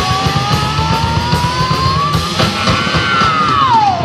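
Live rock band playing loud heavy rock, drums and distorted guitars, under one long sustained high note that climbs slowly in pitch and then slides down near the end.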